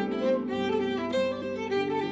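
Violin playing the song's melody over harp accompaniment, a brief instrumental passage between sung lines.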